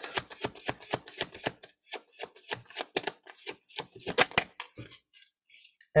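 Tarot deck being shuffled by hand: a fast run of sharp card flicks, about six a second, with a brief pause about two seconds in, thinning out near the end.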